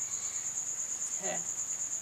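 Crickets trilling steadily in a high, evenly pulsing note.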